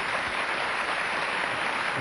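Studio audience applauding, a steady even clatter of many hands.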